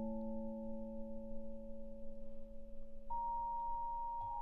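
Yamaha vibraphone played with yarn mallets: a chord of several notes, struck just before, rings on and slowly fades. A single higher note is struck about three seconds in.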